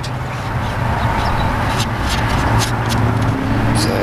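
Steady low mechanical hum, engine-like, under a haze of outdoor background noise, with a few faint short ticks.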